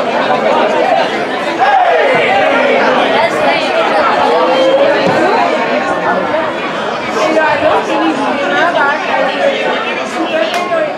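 Spectators' chatter at a football ground: many overlapping voices talking and calling out, with one voice standing out about two seconds in.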